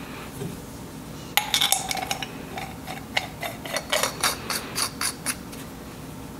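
Stainless-steel brake fluid reservoirs and their knurled caps clinking against each other as they are handled and a cap is fitted: a run of sharp metallic clinks with short rings, starting over a second in and stopping about a second before the end.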